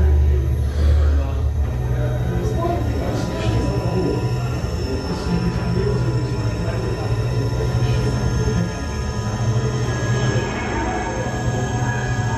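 Atmospheric, dark-toned music with a deep, continuous low drone and sustained high tones held over it.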